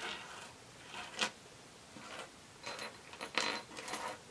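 Small silver jewelry (chains, earrings and charms) clinking and jingling against each other and the tabletop as hands sort through a pile, in several short bursts. The sharpest clink comes about a second in, and a longer jingle comes near the end.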